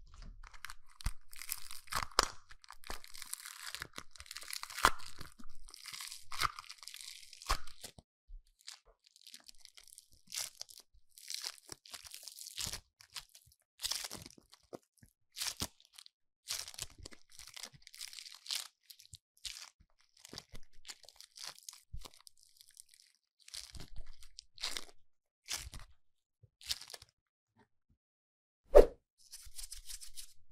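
White foam-bead slime being squeezed and pulled apart by hand, the tiny foam beads crackling and crunching. The crackle is dense for about the first eight seconds, then comes in shorter bursts with brief pauses.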